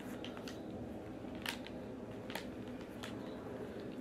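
Sharp plastic clicks from handling over-ear headphones, their ear cups swivelled and folded, about five clicks at uneven intervals over a low room hum.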